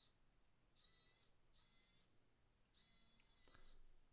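Near silence, with a few faint, short high-pitched whirs about a second apart from a small LEGO-compatible hobby servo turning its arm as a thumbstick drives it.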